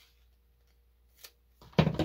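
Scissors cutting through a pleated coffee-filter paper strip: a faint snip just over a second in, then a louder cut near the end.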